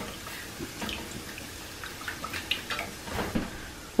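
Whisk stirring melting cream cheese and heavy cream in a saucepan: faint, irregular wet ticks and slaps.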